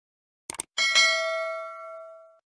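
Two quick clicks, then a bell struck once, its ring decaying slowly.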